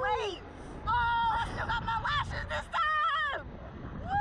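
Two women shrieking and laughing in high voices on a slingshot thrill ride, over a low rumble of wind. There is a falling shriek at the start, a long held scream about a second in, a run of short laughs, then another held scream near the end.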